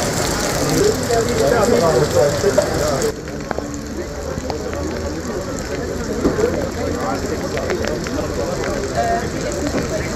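Heavy rain pouring onto paved ground, a dense steady hiss that drops suddenly to a lighter patter with scattered sharp drips about three seconds in.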